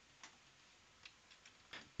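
Near silence: faint room tone with a few faint, short clicks spread through it.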